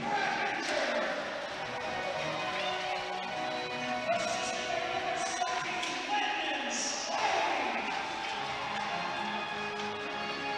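Ice hockey rink sound during play: music over the arena's speakers with crowd voices, and the occasional knock of puck and sticks against the boards.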